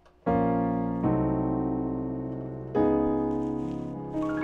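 Piano chords in a gospel-jazz style: three full chords struck, a quarter second in, at about one second and near three seconds, each held and left to fade. The last is a D-flat ninth.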